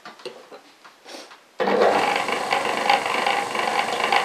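Wooden flywheel blank turning on a home-made motor-driven lathe while a hand-held tool cuts into it: a few faint clicks, then about one and a half seconds in a sudden loud, steady whirring and scraping starts and keeps going.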